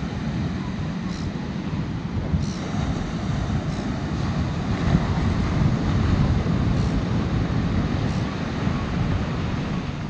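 Wind blowing across the microphone, a steady low rumble, with surf breaking on the beach beneath it.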